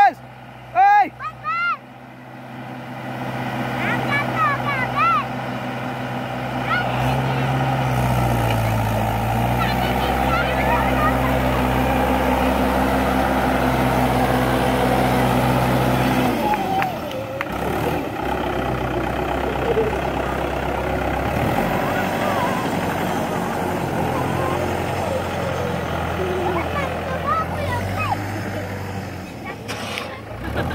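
Mahindra 575 tractor's diesel engine running hard under load, its pitch dipping briefly about eight seconds in as it labours. High-pitched voices call out in the first few seconds.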